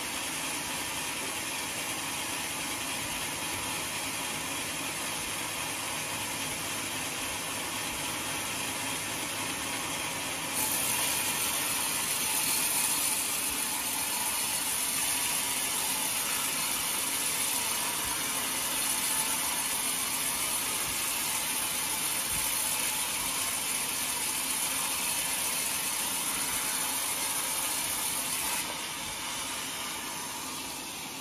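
Large sawmill band saw running and ripping lengthwise through a big log, a steady dense hiss of the blade in the wood. About ten seconds in it turns abruptly louder and brighter, and drops back shortly before the end.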